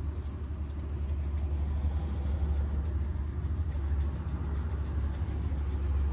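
Bristle shoe brush swept quickly over leather shoes, several short strokes a second, over a steady low rumble of street traffic.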